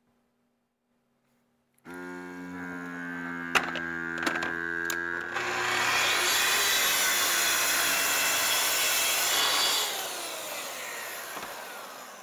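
A track saw starts up about two seconds in, running with a steady whine and a few sharp clicks. It then cuts along the guide rail through a shelf panel, louder and rougher, for about four seconds. The blade then winds down with a falling whine.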